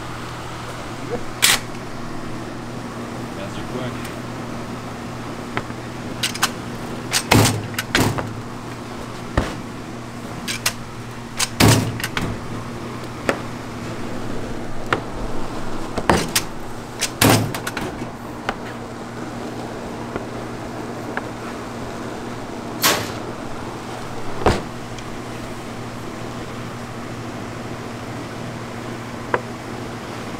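Steady low electric hum from a running motor, with scattered sharp knocks and clacks as hard candy rope and tools are handled on the worktable, about ten in the first two-thirds and none after.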